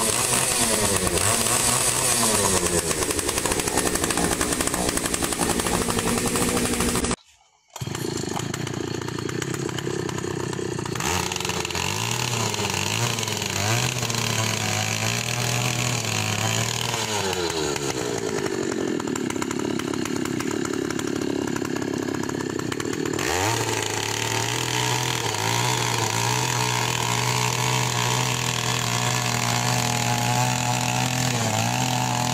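Oshima 2PS earth auger's two-stroke petrol engine running at high revs while the auger bores into soil, its pitch dipping and rising as the load changes. The sound cuts out briefly about seven seconds in, then picks up again.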